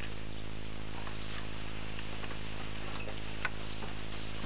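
Steady electrical hum with a stack of even overtones in an old TV soundtrack transfer, with faint scattered ticks and a single short knock about three and a half seconds in.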